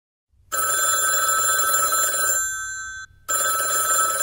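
Telephone ringing, a steady ring of several high tones: one long ring starting about half a second in and fading out near three seconds, a brief pause, then the next ring.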